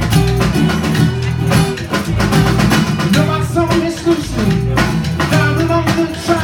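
Live band playing an instrumental passage: acoustic guitar, electric bass and drum kit keeping a steady beat.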